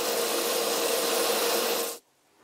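Drum sander running with a steady hum while the curved edge of a plywood piece is pressed against the abrasive drum, smoothing out a bandsaw cut. The sound stops suddenly at the very end.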